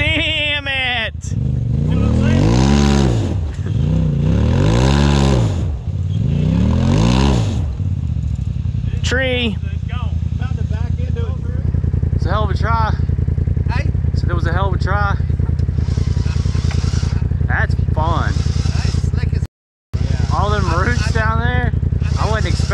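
Off-road buggy engine revving hard three times, each rev rising and falling over about two seconds, as the buggy climbs a steep dirt hill. It then runs on steadily with shorter rev blips, and cuts out briefly near the end.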